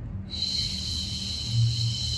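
A long, slow exhale through the mouth during a seated Pilates breathing exercise: a steady, breathy hiss that starts just after the beginning and slowly fades.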